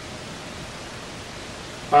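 A steady, even hiss with no other sound in it: constant background noise.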